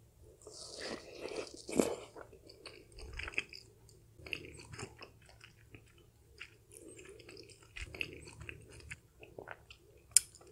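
A person chewing a mouthful of soft dumpling close to the microphone, with irregular wet smacks and small mouth clicks. A sharp click about two seconds in is the loudest sound.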